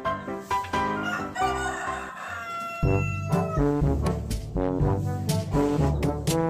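Background music with pitched, brass-like notes and a beat. About a second in, a rooster crows over it for roughly two seconds, its call falling slightly at the end. Near the middle the music turns fuller and more bass-heavy.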